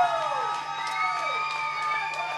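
Audience cheering and whooping at the end of an acoustic song, with several long, wavering calls and a few scattered claps.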